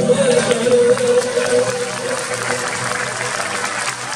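The last held note of the song dies away about a second in, and audience applause with crowd voices rises in its place.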